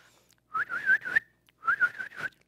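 A person whistling two runs of short, rapidly repeated notes, about four to a run: the speed-up whistle that sheepdog handlers use to send a border collie forward.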